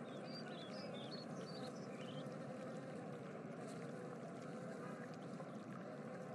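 Steady rushing ambience like running water, with clusters of short high chirps during the first two seconds.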